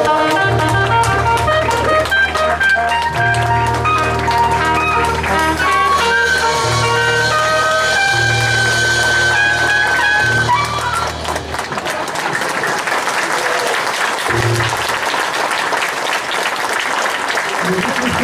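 A traditional jazz band with double bass ends a foxtrot on a long held high note. The music stops about two-thirds of the way through and the audience breaks into applause.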